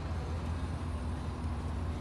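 Power liftgate of a GMC Yukon XL Denali rising under its motor: a faint steady motor hum over a low steady rumble.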